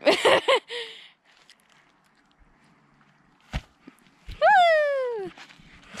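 A girl's voice making short wordless cries in the first second, a single sharp knock about three and a half seconds in, then one long call sliding down in pitch, the loudest sound here.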